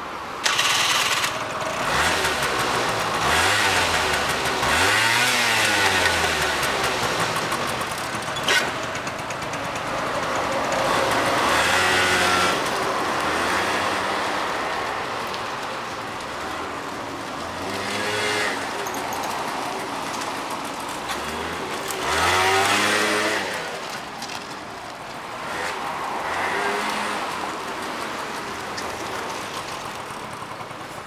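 Honda Live Dio 50cc two-stroke scooter engine starting up about half a second in, then revved and ridden, its pitch rising and falling with several bursts of acceleration. It runs smoothly with no abnormal noises, a sign of a healthy engine.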